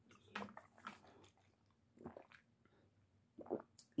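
A few faint gulps and swallows as a person drinks water from a large plastic water bottle, spaced irregularly about a second apart.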